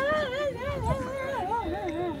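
A woman crying aloud in long, wavering wails, her voice rising and falling over and over without a break: the weeping of a farewell embrace.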